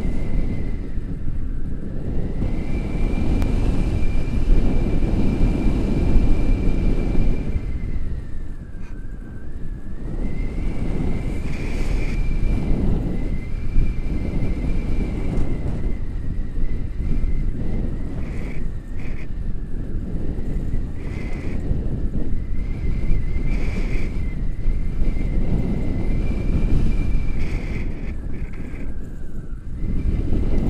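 Airflow buffeting an action camera's microphone in paraglider flight: a low rushing that swells and eases in waves. A thin, steady high tone sounds throughout, dipping in pitch a few times.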